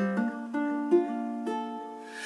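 Moore Bettah tenor ukulele with a spruce top and macassar ebony back and sides, played solo: about four chords struck roughly half a second apart, each left ringing.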